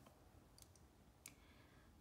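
Near silence with two faint clicks, about half a second and a little over a second in: a key or trackpad click on the laptop advancing the presentation slide.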